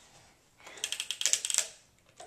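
Plastic toy crane's crank being turned, its ratchet giving a rapid run of clicks for about a second.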